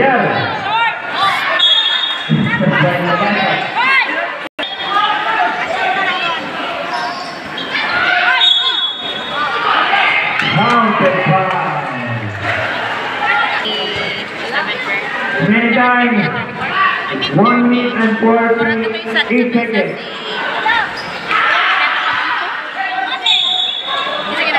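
Basketball game sounds on a covered court: a ball bouncing amid many voices calling out and talking throughout.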